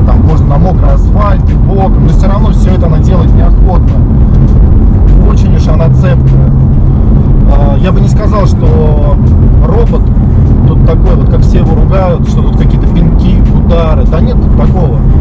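Steady low drone of a 2015 BMW M4's twin-turbo straight-six and its tyres, heard inside the cabin while cruising on a motorway, with a man talking over it.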